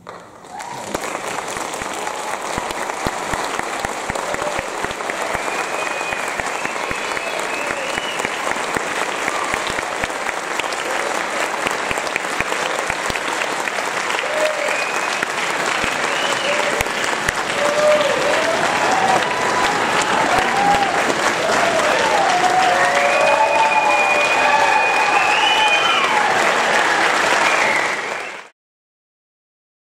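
Auditorium audience applauding after a band piece ends. The clapping starts about half a second in and slowly grows louder, with cheering voices over it, more of them in the second half.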